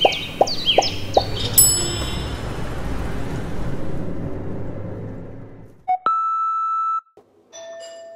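Short intro-logo music sting: a few plucked notes and a bright chime, then a long whoosh that fades away. About six seconds in, a doorbell rings: a high note, then a lower one, a ding-dong.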